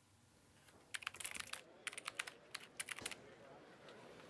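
Faint typing on a laptop keyboard: a quick, uneven run of key clicks for about two seconds, starting about a second in.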